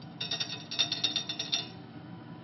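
A quick run of about a dozen light, glassy clicks and clinks from handling the small vial of silver nitrate, lasting about a second and a half.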